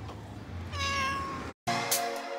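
A cat meows once, a single drawn-out call a little past halfway through, over faint steady street background. Music starts abruptly just before the end.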